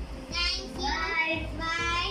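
A young girl singing in a high voice, in a few short phrases of held, bending notes.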